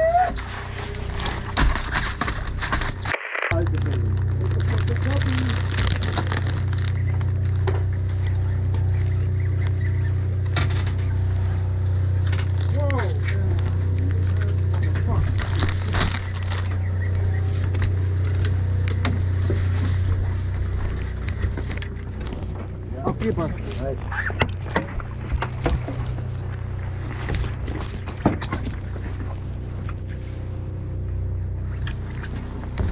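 Fishing boat's engine running with a steady low drone that drops off somewhat about two-thirds of the way through. Voices carry in the background, with scattered clicks and knocks of gear being handled on deck.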